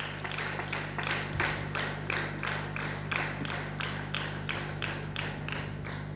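Audience clapping for a prize winner, the claps falling into an even beat of about three a second, over a steady low hum.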